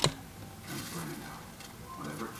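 Glass slow-cooker lid lifted off, a single short clink at the start, followed by faint low kitchen sounds.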